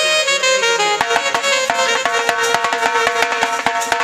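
Live folk music with fast hand-drum playing. A held melody line gives way, about a second in, to a quick, dense run of drum strokes over sustained notes.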